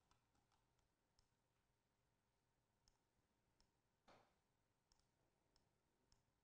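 Near silence in a small room, with faint scattered clicks of a computer mouse as a document is scrolled, and one brief soft rustle about four seconds in.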